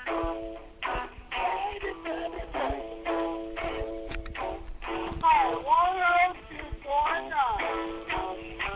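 A man singing a song over guitar accompaniment, in short phrases over steady held chords, with a long rising-and-falling sung note about five to six seconds in.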